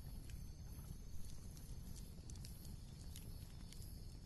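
Faint background ambience: a steady low rumble with scattered soft clicks and ticks.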